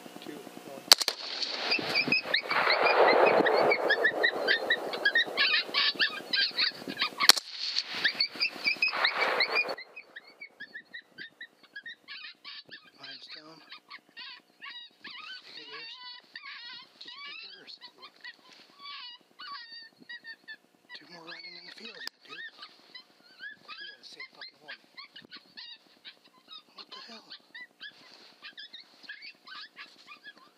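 A pack of coyotes yipping and howling loudly for the first ten seconds, broken by two sharp suppressed rifle shots, one about a second in and one about six seconds later. The chorus cuts off abruptly, and scattered quieter yips carry on.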